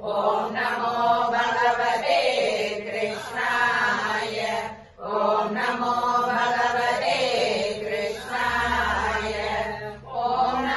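Devotional Sanskrit chanting of sung verses, in two long phrases with a brief breath break about halfway.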